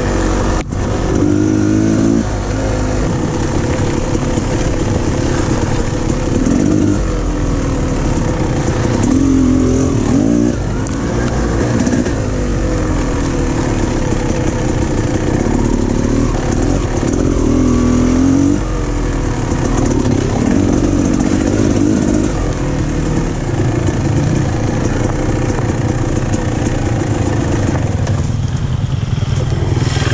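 Single-cylinder enduro dirt bike engine being ridden along a rough trail, the revs rising and falling every second or two as the throttle is opened and closed. There is one sharp knock near the start.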